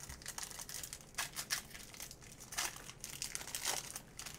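Foil wrapper of a Panini Phoenix football card pack crinkling as it is torn open by hand: a run of irregular crackles, loudest about a second in and again near the end.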